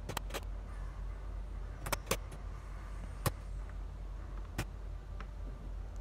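Several sharp metal taps, irregularly spaced, as a hammer strikes a pin punch held in a bench vise. The punch is driving the burnt motor's stuck shaft end out of its small gear and bearing. A faint steady low hum runs underneath.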